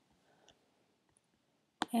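A couple of faint computer-mouse clicks over near silence, then a man starts speaking near the end.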